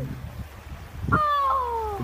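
A child's high-pitched, drawn-out wordless exclamation, starting about a second in and falling steadily in pitch for nearly a second.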